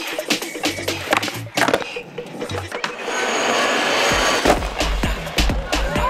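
Skateboard on concrete: sharp clacks of the board and a stretch of wheels rolling, heard over music. A deep bass beat comes in about four seconds in.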